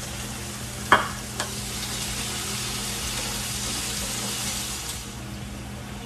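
Chicken breasts frying in a skillet, a steady sizzle throughout. There is a sharp clink about a second in and a lighter one shortly after.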